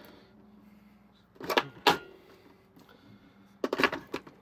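AA batteries being pressed into a plastic toy's battery compartment: two sharp clicks about a second and a half in, then a quick run of clicks and rattles near the end as the cells seat against the springs.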